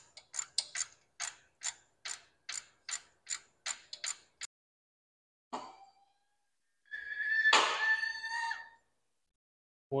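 Hand ratchet clicking steadily, about three clicks a second, as a motor mount bolt is backed out; the clicking stops about four and a half seconds in. A single knock follows, then a longer metallic scrape with a ringing tone from about seven to eight and a half seconds in.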